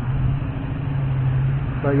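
A steady low hum of an engine idling, with general background noise; a man starts speaking near the end.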